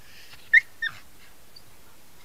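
An animal gives two short, high yelps about a third of a second apart, the first louder.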